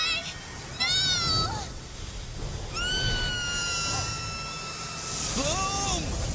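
A series of high-pitched, call-like cries over a low rumble: a short wavering cry about a second in, a long held cry from about three seconds in that slowly falls in pitch, and a rising cry near the end.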